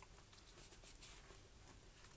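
Near silence: faint rustling of a paperback book's pages being handled, with a soft click at the very start.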